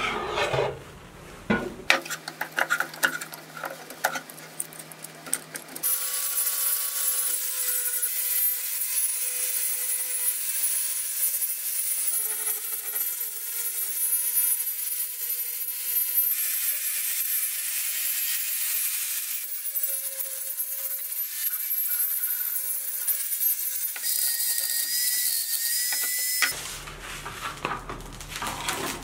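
Angle grinder spinning a brass wire wheel against a log of African blackwood, brushing off loose bark and dirt: a steady run with a high whine that starts about six seconds in and cuts off shortly before the end. Before it, a hand tool scrapes and knocks on the log.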